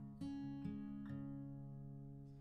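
Steel-string acoustic guitar picked idly: a few notes or chords struck about half a second apart, each left ringing and slowly dying away.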